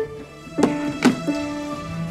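Digital piano keys pressed by a small child: a note struck about half a second in and another about a second in, each left to ring on.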